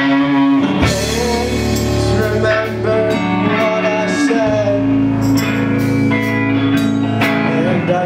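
Live indie rock band playing, with guitar to the fore.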